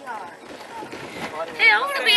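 People's voices inside a car, with a loud, high-pitched vocal exclamation near the end and a short rustle about a second in.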